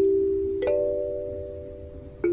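Kalimba with a wooden body and metal tines, plucked by thumb. A note rings on and fades, and a second, higher note is plucked a little over half a second in, the two ringing together as they decay.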